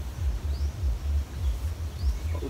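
Low, uneven rumble of wind buffeting an outdoor microphone, rising and falling every fraction of a second.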